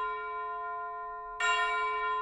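A bell chime ringing out and fading, struck again about one and a half seconds in, the new stroke ringing on.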